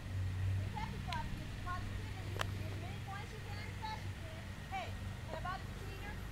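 Faint, distant voices in short scattered snatches over a low steady hum, with one sharp click about two and a half seconds in.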